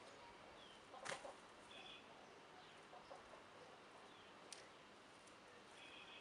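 Near silence with a few faint, short bird chirps. A soft click about a second in, and another about four and a half seconds in.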